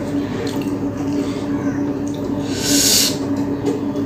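Close-up eating sounds of fingers working rice and fish curry on a plate, with small clicks, over a steady low hum. A brief, loud hiss comes about three seconds in.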